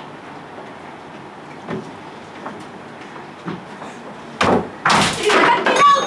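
Quiet room tone with a few faint knocks, then about four and a half seconds in a sudden loud thump and a girl's loud shouted lines as she acts in a skit.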